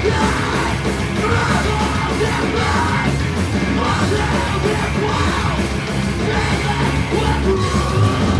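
Hardcore punk band playing live at full volume, a vocalist yelling over the dense, distorted full-band music.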